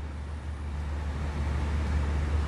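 A steady low hum over a faint background hiss, growing a little louder after about half a second.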